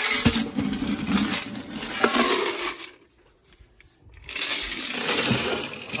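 Wood pellets rattling as a small metal can is dug into a can full of them, then, after a pause of about a second halfway through, pellets pouring from the can into a pellet stove's hopper.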